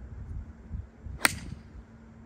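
A single sharp crack of a four iron striking a golf ball off the tee, a little over a second in, over a low background rumble.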